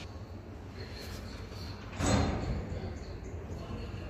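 A single sudden thump about two seconds in, fading over about a second, over a steady low hum.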